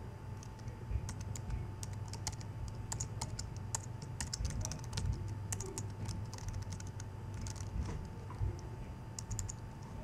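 Typing on a computer keyboard: keystroke clicks in irregular runs, thickest in the middle, with a short burst near the end, over a steady low hum.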